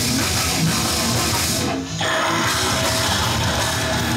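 Death metal band playing live: distorted electric guitar and drum kit at full loudness. The music breaks off for a moment a little before halfway through, then the band comes straight back in.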